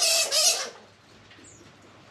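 Squirrel monkey giving a loud, harsh call that breaks off after about half a second, followed by a faint, short high chirp.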